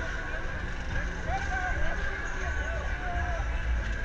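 On board a moving Huss UFO fairground ride: a steady low rumble from the running ride, a thin steady whine, and people's voices calling out briefly several times over it.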